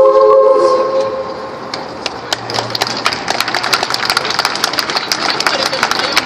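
A cappella female choir holding its final chord, which dies away about a second in. From about two seconds in, the audience claps.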